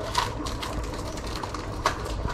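Steady low rumble with a faint, rapid mechanical ticking, and two short sharp clicks, one just after the start and one near the end.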